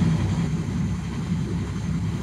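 A shrimp cutter's engine running at a steady low drone, heard from inside the wheelhouse.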